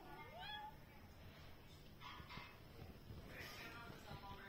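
A calico kitten gives one short, faint meow that rises in pitch just after the start. A few soft rustles follow later.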